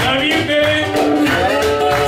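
Live acoustic blues: a man sings over a strummed guitar, backed by a conga played with a stick and an upright bass.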